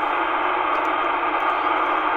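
Steady hiss of band noise from an amateur radio receiver in upper-sideband mode on the 10-metre band, heard through its speaker between transmissions.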